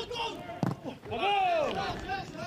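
A football kicked with a single thud about two-thirds of a second in, followed by a player's long shout on the pitch.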